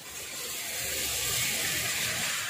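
A steady hiss with a faint low hum beneath it, swelling slightly in the middle and easing near the end.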